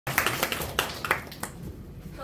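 A few people clapping, the claps scattered and uneven, dying away about a second and a half in.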